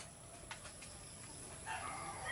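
Quiet farmyard background, with a sharp click at the start and a faint, short animal call near the end.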